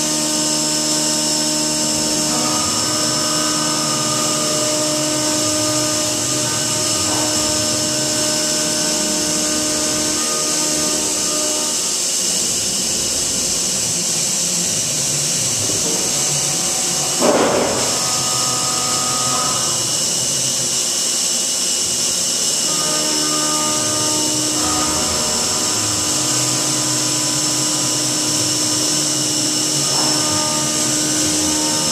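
Milltronics CNC mill cutting a metal block under flood coolant: a steady spindle and cutting whine with several held tones, over a hiss of coolant spray. The tones drop away twice for a few seconds, and a brief louder burst comes a little past halfway.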